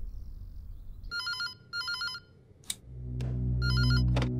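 Electronic desk telephone ringing with a warbling trill: two short rings about a second in, then a third just before the end.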